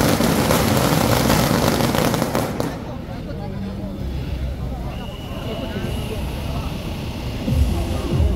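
A string of firecrackers going off in a rapid, continuous crackle that stops abruptly almost three seconds in. Crowd voices follow.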